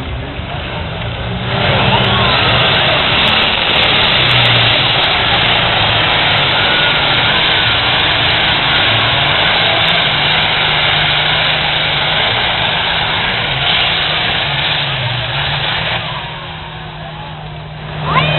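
Diesel pulling tractor running at full throttle while dragging a weight sled: a loud, steady engine run that comes up sharply about a second and a half in and falls away near the end.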